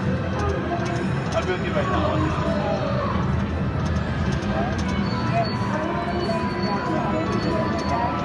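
Konami video slot machine running its free-spin bonus round: game music and reel-spin sounds play continuously, under a background of indistinct casino chatter.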